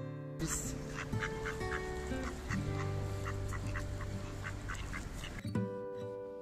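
Waterfowl calling: a quick run of short, repeated honking calls over a steady outdoor hiss, which cuts in about half a second in and stops suddenly near the end. Acoustic guitar music continues underneath.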